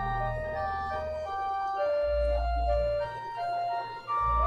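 Church organ playing a slow melody in clear, separate held notes, with deep sustained bass-pedal notes coming in about halfway through.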